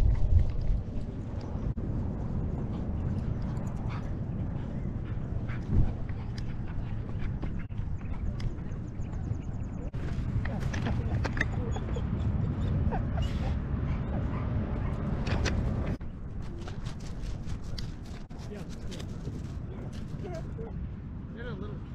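Dogs meeting through a chain-link fence: short yips and whimpers over a steady rumble of wind and body movement on a camera worn on a dog's back.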